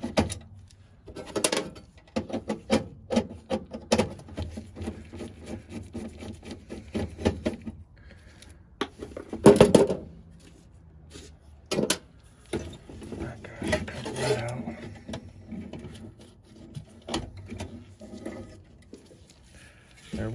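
Nut driver backing out the screws that hold a gas furnace's manifold to its burner assembly: irregular small metal clicks and scraping, with one louder knock about halfway through.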